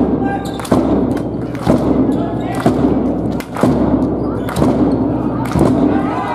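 A fan's bass drum beaten at a steady pace of about one beat a second, each beat echoing through the sports hall, with crowd voices chanting between the beats.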